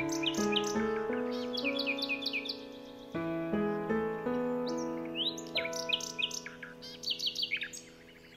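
Calm instrumental study music, notes struck and slowly fading, with songbirds chirping over it in quick runs of short, falling notes, once through the first half and again in the second half.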